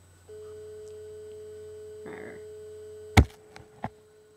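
A steady hum at one fixed pitch starts suddenly just after the beginning and holds. About three seconds in comes a loud sharp knock, followed by two lighter clicks.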